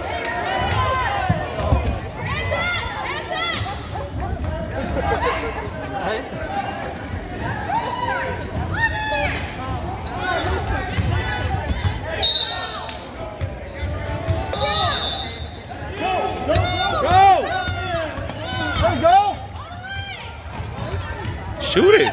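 Basketball dribbling on a hardwood gym floor during a game, with voices of players and spectators echoing in the gym.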